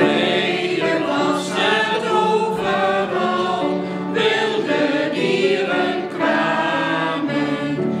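A choir singing a Christmas hymn, starting suddenly and going on in phrases of a second or two.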